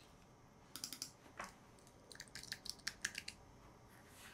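Faint, irregular clicks of a computer keyboard and mouse, in a few short runs, the densest near the middle of the stretch.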